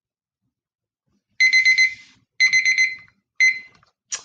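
Countdown timer alarm going off, signalling that the work time is up: a high electronic beep in two quick bursts of four, about a second apart, then a single beep as it is stopped.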